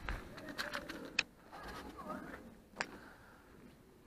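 Footsteps on loose gravel and handling knocks from a hand-held camera, with two sharp clicks, one about a second in and one near three seconds.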